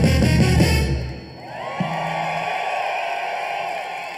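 A live ska band with brass, baritone saxophone and drums plays its final bars and stops abruptly about a second in. A large crowd then cheers and screams.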